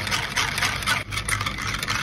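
A wire balloon whisk beating a runny mango pudding mixture in a round tin: quick, irregular scratchy strokes of the wires scraping through the liquid and against the tin, over a steady low hum.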